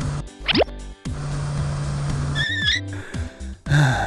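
Children's cartoon background music with sound effects: a quick rising glide about half a second in, then a steady motor-like hum for over a second as the toy car moves, a short warbling tone, and a brief loud burst near the end.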